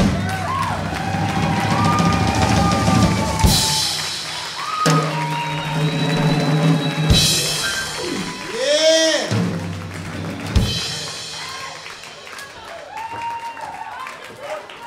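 Live band playing with drum kit and bass, with two cymbal crashes a few seconds apart and sharp drum hits; voices rise and fall over the music, which thins out near the end.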